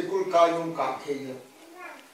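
A man preaching into a microphone, one long drawn-out, sing-song stretch of his voice before it trails off.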